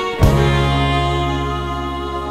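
A live rock band's music: a loud full-band hit a moment in, then a held chord with a deep bass note, ringing on and slowly fading.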